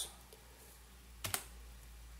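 Two quick computer clicks close together, about a second in, advancing the presentation to show the next figure, over a faint steady low hum.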